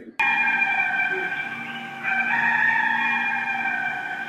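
Sustained electronic tones: a chord of several steady pitches that starts abruptly after a short gap, steps slightly upward about two seconds in, and eases off near the end. It serves as a transition sting between podcast segments.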